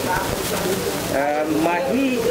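A man's voice speaking, starting about a second in, over steady background noise.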